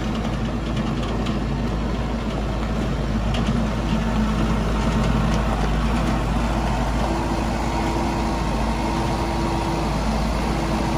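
Kubota M59 tractor loader backhoe's diesel engine running steadily as the machine drives over gravel, a little louder in the middle as it comes closest.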